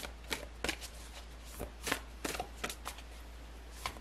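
A deck of tarot cards being shuffled by hand, packets of cards dropped onto the deck in a run of irregular soft clicks.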